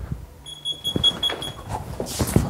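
Security alarm beeping: a rapid run of high-pitched electronic beeps that starts about half a second in and stops shortly before the end.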